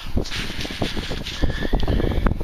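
Wind on the microphone, an uneven rumble with many short, irregular crackles.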